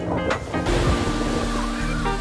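Sea surf breaking and washing up a sandy beach: a rushing hiss of foam that comes in a little over half a second in. Background acoustic guitar music plays under it.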